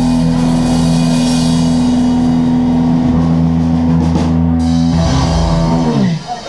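Live rock band playing loud: electric guitars and a drum kit with cymbals, over a long held low chord. The band stops right at the end.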